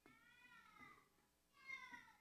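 Dry-erase marker squeaking on a whiteboard as it writes: two drawn-out, faint squeaks that slide down in pitch, the second starting about a second and a half in.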